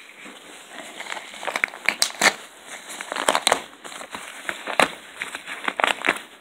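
A yellow padded paper mailer crinkling and crackling as it is handled and torn open by hand, in irregular sharp crackles.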